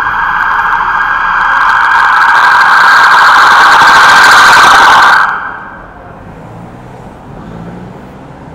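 Emergency vehicle siren sounding very loud, growing louder over the first few seconds, then switched off suddenly about five seconds in. Low traffic and engine hum remains afterwards.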